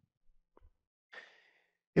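A man's faint breath: a short, soft inhale about a second in, in an otherwise near-silent pause.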